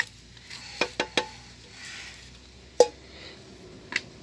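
Metal clinks and knocks as the steel parts of a Yanmar B8 engine are handled during teardown. A few quick knocks come within the first second or so, and one louder, briefly ringing clink comes almost three seconds in.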